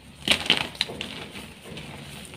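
Soft homemade gym chalk chunks crushed between bare hands. A quick cluster of crisp cracks and crunches comes about a quarter second in, then softer crumbling of chalk powder.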